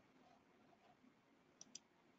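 Near silence with two faint computer-mouse clicks in quick succession about a second and a half in.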